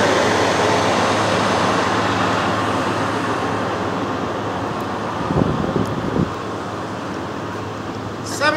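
Steady running noise of a nearby vehicle engine with a low hum, slowly growing fainter. Two soft low thumps come a little past five and six seconds in.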